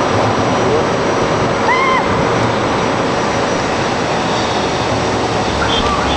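Steady, loud rushing noise with a fluctuating low rumble. About two seconds in comes one short, high, rising-and-falling call.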